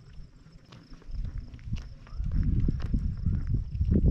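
Footsteps on a paved walkway, with a low rumble that builds from about a second in. A faint, steady, high insect trill runs underneath.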